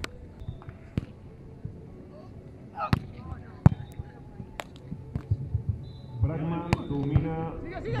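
Beach volleyball being played: about five sharp slaps of hands and forearms on the ball, spaced over several seconds, the loudest a little before four seconds in. Players shout near the end.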